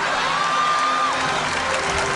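Studio audience cheering and applauding over music, with one held high note about a second long near the start that drops away at its end.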